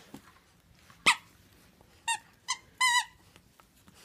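Puppy vocalising during tug play. There is one sharp yip about a second in, then three short high-pitched squeaky yelps, the last one longer and wavering.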